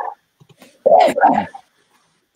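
A dog barking: a short bark at the start, then a louder double bark about a second in.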